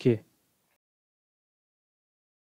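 A man's voice finishes a spoken word in the first quarter second, then complete digital silence.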